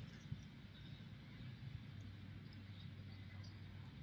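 Faint chewing of a battered, fried banana-blossom fish fillet, with a soft click about a third of a second in, over a quiet outdoor background.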